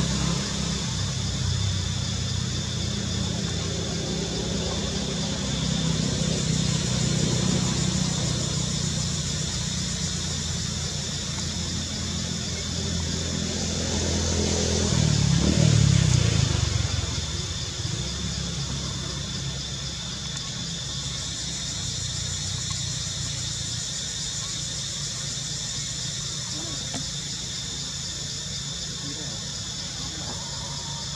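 Steady low engine rumble that swells for a couple of seconds about halfway through, under a constant high-pitched buzz.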